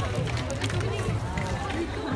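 Girls talking and chattering close by, with the babble of a crowd behind.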